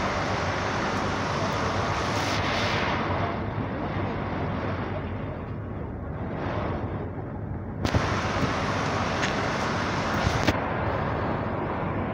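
Steady outdoor rumble beside a parked motor coach, heavy with wind buffeting the microphone, with two sharp knocks, one about eight seconds in and one about ten and a half seconds in.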